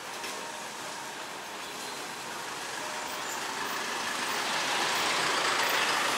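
Street traffic noise growing steadily louder as a pickup truck comes up from behind and draws alongside.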